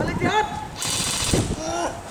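A short burst of fully automatic fire from an airsoft rifle, rapid pops lasting just over half a second, starting about three quarters of a second in.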